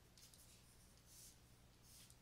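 Faint scratching of a stylus writing on a tablet surface, a few short strokes in quick succession, over a faint low hum.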